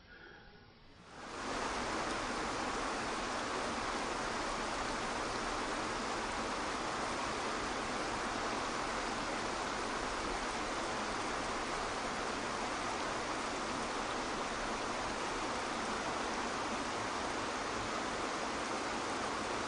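Steady, even rush of a waterfall pouring into a pool, coming in about a second in and holding level throughout.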